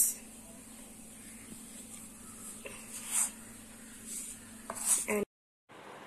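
Wooden spatula stirring and scraping a thick, crumbly ghee, flour and sugar mixture in a non-stick kadai: a few short, faint scrapes over a low steady hum. The sound cuts off suddenly shortly before the end.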